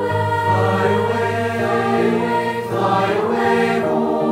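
Boys' and young men's choir singing sustained chords in harmony, the held notes shifting every second or so.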